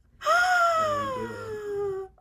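A woman's long, high wail of dismay, one drawn-out vocal groan with no words, sliding steadily down in pitch for nearly two seconds.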